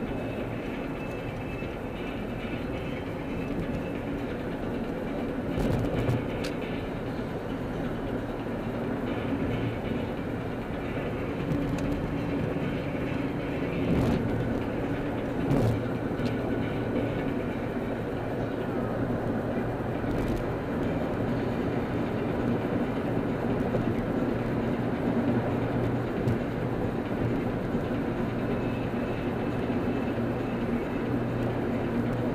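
Steady road and engine drone inside a car cruising on a freeway, with a few brief thumps at about 6 seconds and again around 14 to 16 seconds in.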